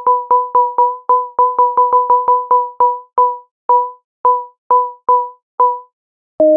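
Thor synthesizer patch in Reason: a plain sine-wave tone doubled by a second sine an octave below. A single note is played over and over, each one short and dying away quickly. The notes come about five a second at first, then slow and spread out with gaps. An LFO routed to the upper oscillator's pitch is being turned up, adding a slight vibrato.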